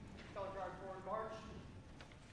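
A person speaking briefly and faintly, away from the microphone, for about a second; the words are not clear.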